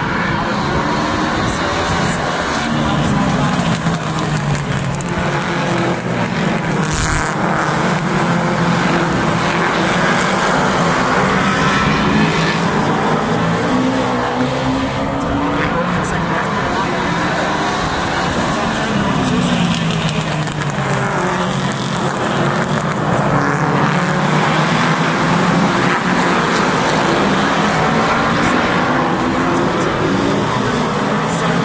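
Several oval race car engines running together as a pack laps the track, their pitch rising and falling over and over as the cars accelerate down the straights and ease for the bends.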